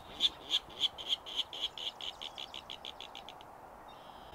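Virginia rail calling: a long run of sharp notes that speeds up and fades, stopping about three and a half seconds in.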